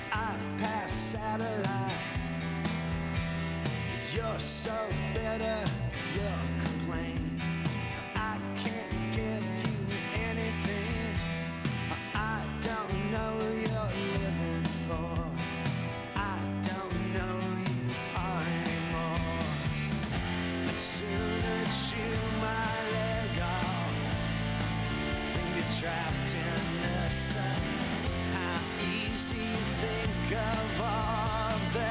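Rock music: guitars over a steady bass line, playing without a break.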